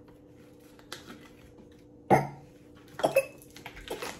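A person coughing twice, sharply, about two and three seconds in, with a faint click about a second in.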